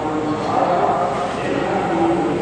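Many voices chanting together in long held notes, a steady drone of a congregation.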